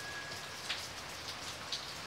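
Steady rain ambience with a few louder single drops. A lingering high note fades out in the first half second.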